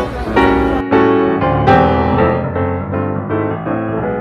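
Background piano music, single notes and chords that ring and fade. A hiss and low rumble lie under it for the first second, then cut off suddenly.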